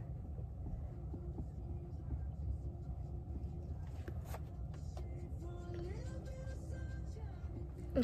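Steady low rumble in a car cabin, with faint murmured voices reading quietly over it.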